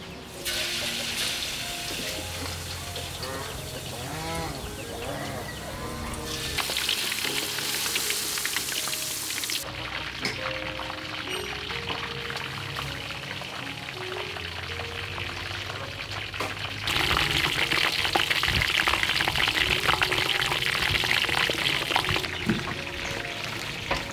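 Noodles sizzling as they are stir-fried in a wok, with the frying noise swelling louder about a third of the way through and again from about two-thirds of the way through. Soft background music with sustained notes plays underneath.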